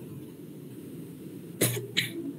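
A person's single short cough near the end, heard over a video-call line with a faint steady hiss.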